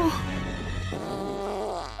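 Cartoon fart sound effect: a long, low, buzzing blat with a slightly falling pitch toward the end, played over the show's soundtrack.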